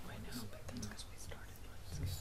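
Faint low voices away from the microphone, with a few small clicks, over a low steady hum.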